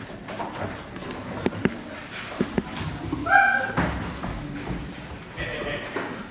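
Handling noise of a stage microphone being taken off its stand through the PA: a series of sharp knocks and thumps, with a short pitched sound about three seconds in, in a large hall with low voices in the room.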